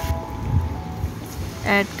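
Battered potato patties frying in hot oil in a pan, a steady hiss of sizzling. Soft background music holds long notes throughout, and a voice says one word near the end.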